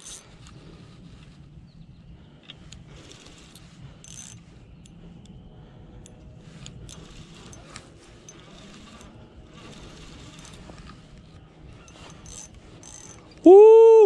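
Okuma Ceymar 1000 spinning reel being cranked while a hooked bass is reeled in: quiet, steady winding with scattered small clicks. A man shouts loudly near the end.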